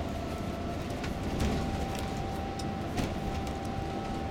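Inside a tour coach driving on a country road: a steady low rumble of engine and tyres, with a constant mid-pitched whine and a few light clicks and rattles.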